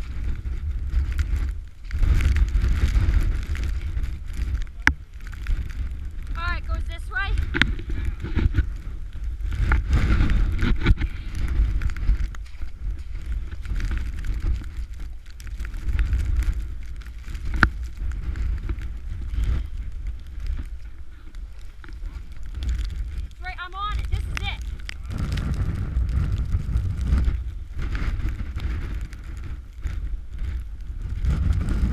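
Storm wind buffeting the microphone in a blizzard: a heavy, uneven low rumble. Two short pitched, wavering sounds cut through, at about seven seconds and near twenty-four seconds.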